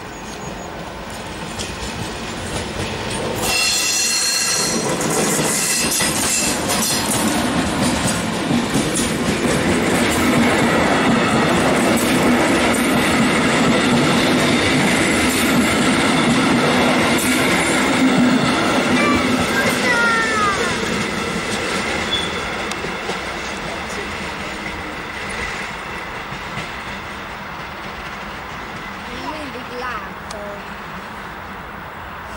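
MÁV V43 electric locomotive hauling passenger coaches past at close range. The sound grows sharply a few seconds in, stays loud with a steady rumble and the running noise of wheels on rail, and has a brief falling wheel squeal about two-thirds of the way through. It then fades as the train moves away.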